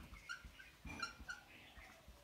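Whiteboard marker squeaking on the board while a word is written: a few short, high squeaks, faint.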